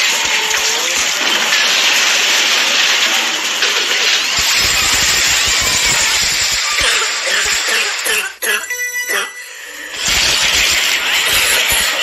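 Cartoon brawl sound effect: a dense, continuous jumble of hits, thuds and yelling voices. A little past the middle it breaks off briefly for a ringing tone, then the fight noise starts again.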